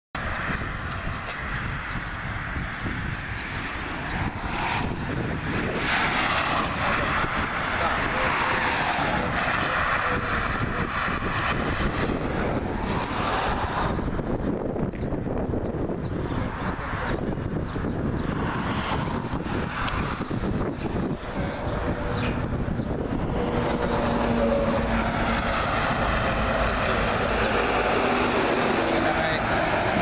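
Road traffic: cars and lorries passing one after another, their noise swelling and fading as each goes by, over a steady low rumble, with some wind on the microphone.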